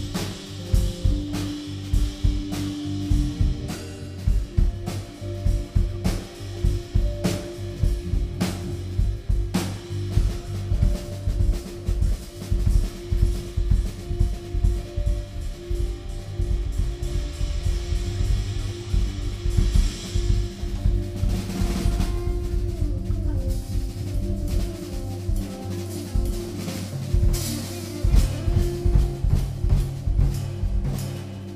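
Live instrumental band playing, with the drum kit to the fore: busy snare, bass drum and cymbal strokes over held keyboard chords and a bass line. The cymbals swell twice, about two-thirds of the way through and near the end.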